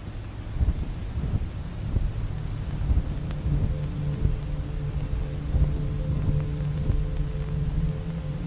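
Dark ambient soundtrack: a deep rumble with irregular heavy thuds, joined about three and a half seconds in by a sustained low droning chord.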